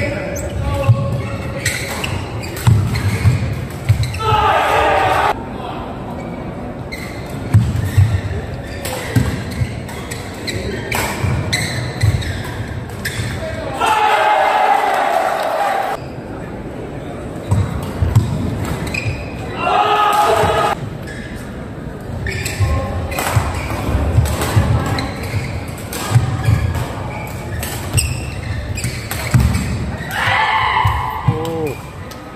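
Badminton play in a large indoor hall: sharp racket strikes on the shuttlecock and the thud and squeak of players' shoes on the court mat. Short bursts of voices come about four, fourteen and twenty seconds in.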